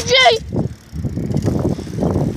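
Uneven low rumble of wind and riding noise on a handheld phone's microphone on a moving bicycle, after a short high-pitched yell at the very start.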